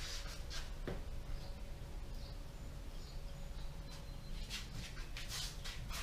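A foam hand applicator pad rubbing polishing compound into a car's painted hood, heard as soft swishing strokes: a few near the start and a cluster near the end. Under it is a steady low hum with a faint steady tone.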